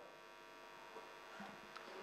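Near silence: room tone with a faint, steady electrical hum.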